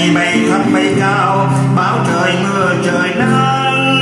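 A man singing a Vietnamese song, accompanied by acoustic guitar.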